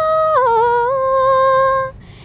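A woman singing unaccompanied, holding one long note that steps down to a lower note about half a second in and is held there until it breaks off just before the end.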